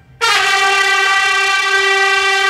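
A loud horn-like chord of several held notes starts suddenly just after the start and holds steady: a brass-like music sting from the show's soundtrack.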